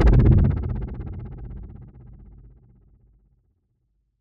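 A synthesized impact sound effect: a sudden deep, bass-heavy hit with a fast flutter running through it, fading away over about three seconds.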